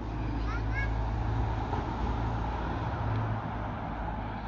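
Steady low outdoor rumble, with two short rising chirps about half a second in.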